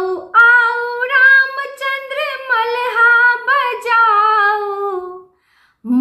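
A woman singing a traditional Maithili Gauri geet (folk song) unaccompanied: one long, wavering melodic phrase that ends about five seconds in, with singing picking up again just after.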